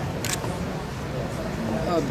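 A short, sharp click about a quarter second in, over a low murmur of background voices.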